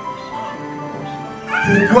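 Soft background music of sustained, held chords playing under a pause in a sermon. Near the end, a man's amplified voice rises over it with one word.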